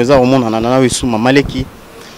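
A man's voice through a handheld microphone: drawn-out, buzzing vocal sounds for about a second and a half, then it falls quiet.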